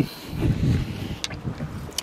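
Handling noise from a camera on a car dashboard being moved by hand: rubbing and rumbling against the microphone, with a sharp click about a second in and another near the end.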